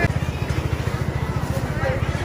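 A small engine running steadily: a low, rapid, even throb. Faint voices in the background.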